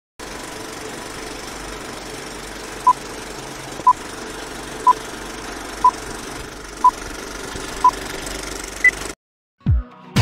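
Old-film countdown leader sound effect: a steady rattling, hissing projector-style noise with a short beep about once a second, six beeps at one pitch and a seventh higher, before the noise stops suddenly. Electronic music with a heavy beat starts just before the end.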